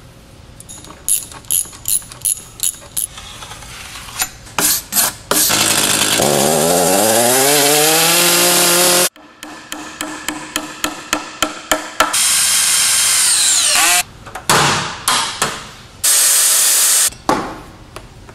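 Hammer blows on a nail in quick runs, alternating with a power drill. The drill runs up in pitch for several seconds and cuts off suddenly, later winds down, and then runs in short bursts.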